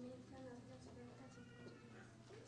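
Near silence in a hall, with a faint, high voice.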